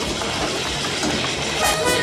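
Skateboard wheels rolling on asphalt, a steady rumble, with music coming up louder near the end.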